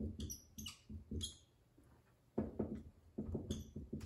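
Dry-erase marker squeaking on a whiteboard in two quick runs of short strokes as letters are written.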